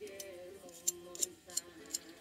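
A few sharp metallic ticks from a fingernail flicking a Damascus-steel full-hollow-ground straight razor blade. There is only a faint ring after each tick: the blade rings little because its thin hollow is slightly narrower than on wider blades.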